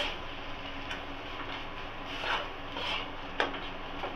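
Metal spatula scraping and stirring a thick spice paste around an aluminium kadai, in a few rasping strokes with a sharp clink near the end.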